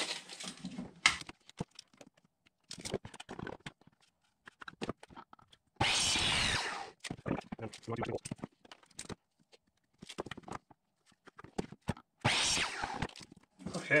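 Cut wooden boards being handled and knocked on a workbench, with scattered clicks and knocks. About six and again about twelve seconds in, a longer rasping zip as a steel tape measure blade is pulled out or retracts.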